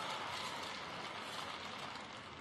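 Arena ambience: a steady, even noise from the crowd in a large sports hall, slowly getting quieter.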